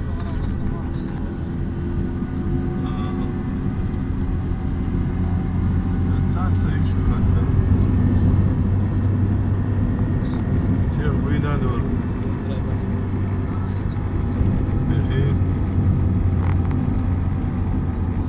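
Steady low drone of a vehicle's engine and tyres heard from inside the cab while driving on a highway, swelling slightly for a few seconds near the middle.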